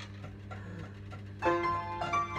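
A 1924 coin-operated nickelodeon player piano starting up: a steady low hum from its mechanism, then about one and a half seconds in the piano begins playing.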